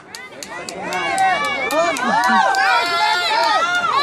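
Several children's voices shouting and cheering at once, overlapping, getting louder about a second in.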